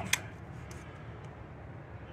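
A single sharp click just after the start as the electric fuel pump is shut off, followed by a steady low hum.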